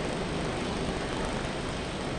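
Steady, even background noise with no distinct events: the soundtrack's room tone.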